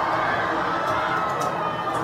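Crowd in the stands cheering and shouting in a steady wash of many voices.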